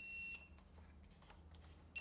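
Snap-on Techangle electronic torque wrench beeping: a high, steady electronic tone that stops about a third of a second in, then a second beep starting just at the end. Its batteries are run down.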